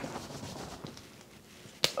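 A single sharp hand clap near the end, after a stretch of quiet room tone.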